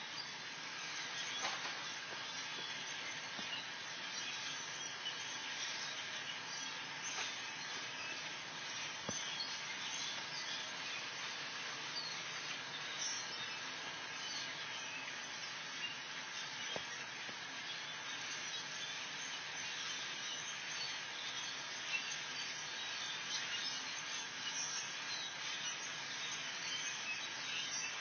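A large flock of birds calling together, a steady chorus of many overlapping calls.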